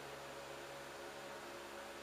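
Faint, steady hiss with a low hum: room tone.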